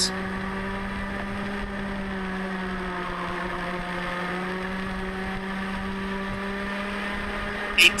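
Rotax Mini Max 125cc two-stroke kart engine running at a steady high pitch, heard from a camera mounted on the kart, the note holding almost level throughout.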